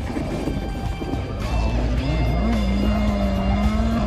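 Rally car engine at speed; about halfway in its note climbs and then holds steady, under background music.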